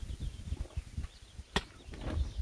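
Cotton t-shirt fabric rustling as it is pulled on over the head, with gusts of wind on the microphone and a single sharp click about one and a half seconds in.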